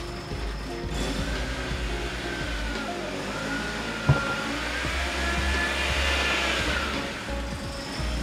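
BMW E36 318is's M44 four-cylinder engine idling steadily, heard from inside the cabin, with a thin high whistle that rises and falls over a few seconds. The owner puts the engine's sound down to a vacuum leak. A single short knock comes about four seconds in.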